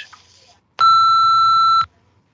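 A single answering-machine beep: one steady tone lasting about a second, marking the start of recording after the outgoing greeting.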